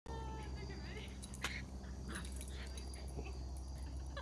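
A dog whining in high, wavering cries, with a sharp click about one and a half seconds in and a few short yips after.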